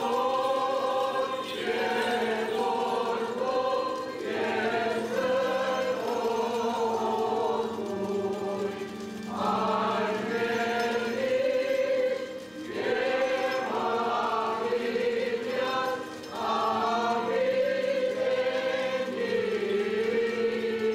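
A choir chanting an Armenian liturgical hymn in long phrases with short breaks between them, over a steady low held note.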